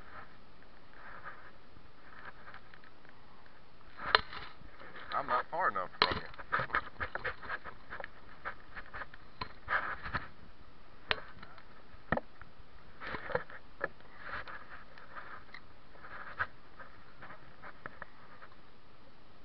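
Irregular knocks, clicks and splashy water sounds close to the microphone of someone wading in a shallow river, starting about four seconds in, over a steady background hiss.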